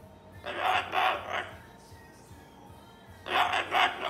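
Moluccan cockatoo mumbling in speech-like chatter: two short bursts of babble, one about half a second in and one near the end.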